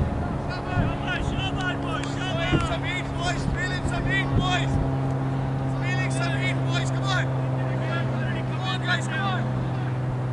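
A steady, low engine hum running throughout, with two stretches of distant voices over it.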